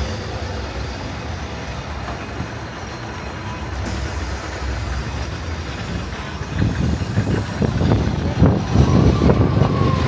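Open-air amusement park ambience: a steady low rumble with faint distant crowd noise, growing louder and gustier from about two-thirds of the way in.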